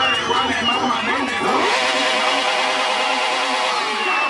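A sport motorcycle's engine revs up and holds at high revs while the bike stands, mixed with people's voices and crowd noise.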